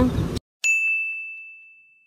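A single bright chime, a 'ding' sound effect on the end card, starting about half a second in and fading away over about a second and a half, with two faint ticks as it fades.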